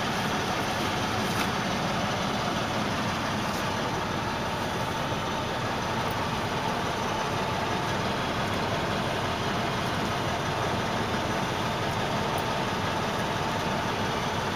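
A truck engine idling with a steady, even drone, heard from inside the cab.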